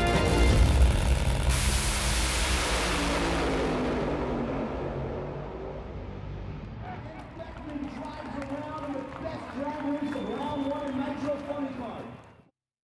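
Supercharged nitromethane Funny Car engine at full throttle on launch: a loud rushing noise that starts about a second and a half in and fades over several seconds as the car runs away down the track. Music plays underneath, and indistinct voices come in during the last few seconds.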